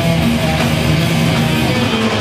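Heavy metal band playing live at full volume: distorted electric guitars holding chords over bass and drums, in a loud, dense, unbroken wall of sound.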